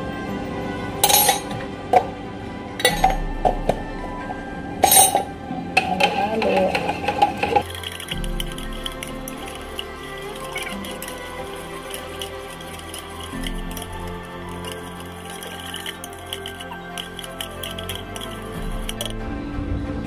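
Background music throughout, with a metal spoon clinking against a pot several times in the first six seconds as seasoning is spooned in and stirred.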